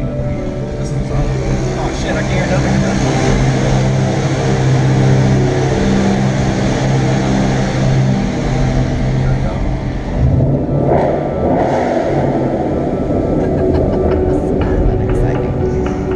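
Ford Mustang 5.0 Coyote V8 heard from inside the cabin while driving through a tunnel: a steady engine drone, then a rougher, louder burst of throttle about ten seconds in.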